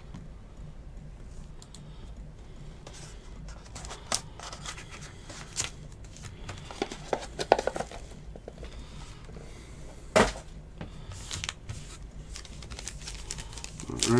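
Foil trading-card pack wrappers being handled and crinkled, with scattered sharp crackles and one louder snap about ten seconds in.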